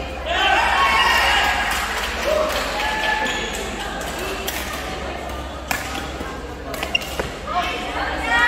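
Badminton rally: rackets striking a shuttlecock with sharp cracks, the clearest two about a second apart near the end, under players' and onlookers' voices calling out in a large hall.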